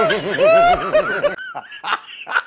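A man laughing in a rapid, wavering voice, cut off abruptly just over a second in; then fainter, short, separate laughing sounds.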